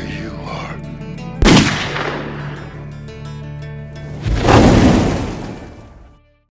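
Held trailer music, cut by a sharp rifle shot about a second and a half in that rings away. A second, longer boom swells a little after four seconds and fades out at the end.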